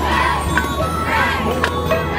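A girls' dragon boat crew shouting in unison while paddling, with a hand-held brass gong at the bow struck about once a second to keep the stroke; two strikes fall in this stretch.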